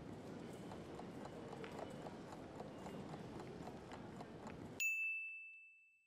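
Faint background noise with scattered soft clicks, then a single bright chime about five seconds in that rings out and fades over about a second: the quiz timer's 'time's up' signal.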